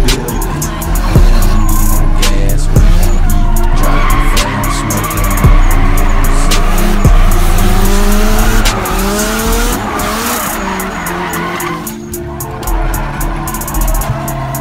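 Drift car engines revving up and down, with tyres squealing as the cars slide sideways, mixed with a hip-hop beat. The revving is strongest in the middle and eases off near the end.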